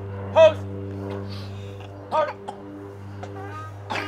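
Steady low electrical hum with several evenly spaced tones, with a few brief shouted voice calls over it. The loudest call comes about half a second in and another about two seconds in.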